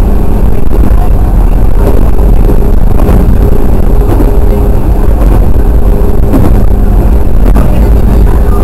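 JR West 103 series (3550 subseries) electric train running along the line, heard from inside the front cab: a loud, steady low rumble with a faint steady hum and a few sharp knocks.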